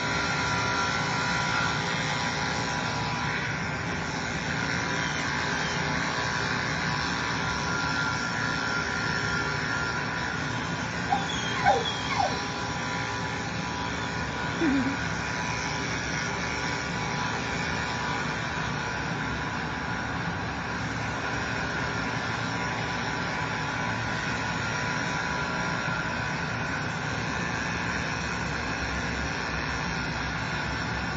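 Corded electric dog grooming clipper with a #7 blade running steadily as it shaves a shih tzu's back leg, a constant motor hum. A few brief rising and falling squeaks cut in about a third of the way through.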